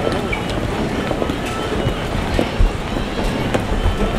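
Busy airport terminal ambience: a steady low rumble and hum under background voices of passing travellers, with small knocks from walking and handling of the camera.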